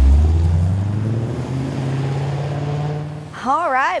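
Chevrolet Camaro's 6.2-litre V8 exhaust running under throttle, loudest at the start, then easing a little as its note climbs slowly in pitch. A woman's voice cuts in near the end.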